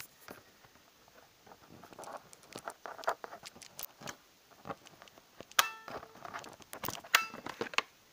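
Laptop battery pack being unlatched and pulled out of the laptop's underside: a run of irregular plastic clicks and knocks, with two louder clacks that ring briefly, about five and a half and seven seconds in.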